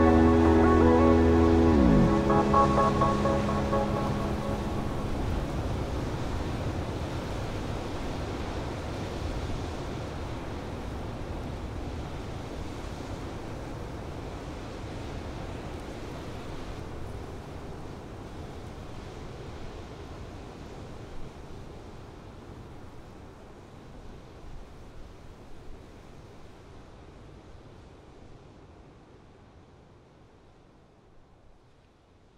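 A held music chord slides down in pitch and ends about two seconds in, leaving the wash of sea waves on a shore, which fades out slowly.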